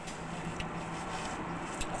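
A steady low hum over background noise, with two faint clicks: one about half a second in, one near the end.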